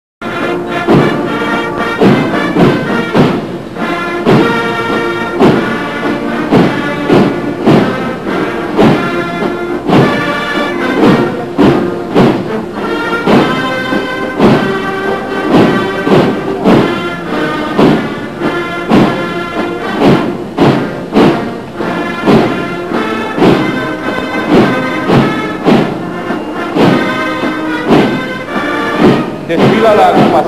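Military band playing a march, its melody carried over a regular drum beat.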